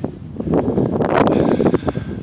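Wind buffeting the microphone, swelling into a gust about half a second in and easing off near the end.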